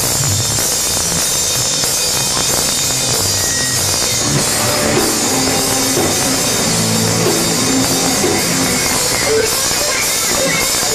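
Rock band playing live: electric guitars, bass guitar and drum kit at a steady, loud level.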